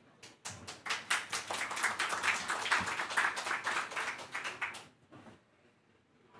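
Audience applauding: many hands clapping for about five seconds, then dying away.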